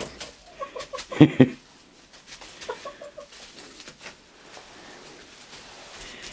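Hens clucking softly, with short low clucks in two brief bouts, one near the start and one about halfway. A person laughs once, loudly, about a second in.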